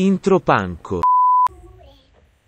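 About a second of speech, then a single steady beep lasting about half a second that cuts off sharply: an editor's censor bleep.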